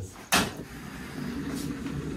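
A desk knocked and then pushed across the floor: a sharp knock, then a low rumbling scrape that goes on steadily.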